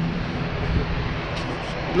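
Jet aircraft engine noise: a steady rush with a low, even hum underneath.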